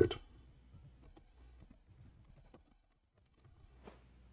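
Faint, scattered clicks of computer keys, a few isolated taps a second or so apart.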